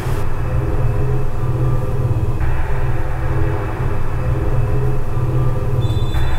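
Steady low rumbling drone with sustained notes that shift slowly in pitch above it: a dark background soundtrack.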